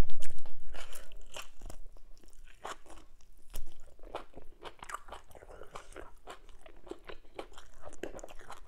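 Close-miked eating: a loud crunching bite at the start, then steady chewing with wet mouth clicks and smacks, and another crunch about three and a half seconds in.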